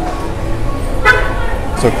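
Ambience of a busy covered produce market: a steady low rumble under faint crowd noise, with one short pitched sound about a second in.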